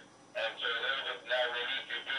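A voice talking over a mobile phone's loudspeaker, thin with no low end, starting about a third of a second in.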